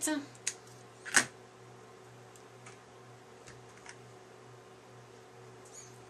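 Small scissors snipping through paper, two short snips in the first second or so, the second the loudest. After that come a few faint light clicks over a steady low hum.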